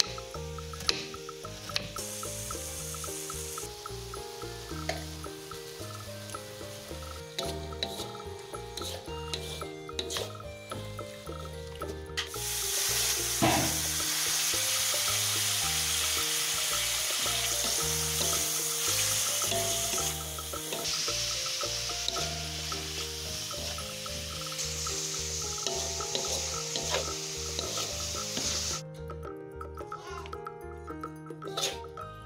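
A knife clicking on a wooden cutting board for the first twelve seconds or so, then hot oil sizzling loudly from about twelve seconds in as sliced green chilies and vegetables stir-fry in a wok, stirred with a wooden spatula. Background music throughout.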